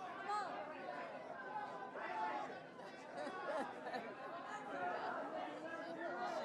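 Indistinct chatter of many overlapping voices, a crowd talking with no single voice standing out.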